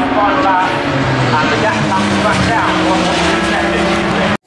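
Several Super Touring race cars' engines running hard as the cars pass in a close group, their pitch climbing and dropping with the throttle and gear changes.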